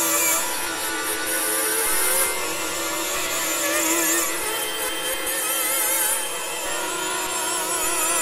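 Microtonal electronic music from a virtual CZ software synthesizer, tuned to 12 notes of 91-tone equal temperament: a dense, buzzy layer of sustained synth tones, some wavering in pitch, with little bass.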